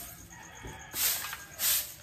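A broom swept across a concrete floor in short, regular strokes, two swishes in quick succession. A rooster crows faintly in the background.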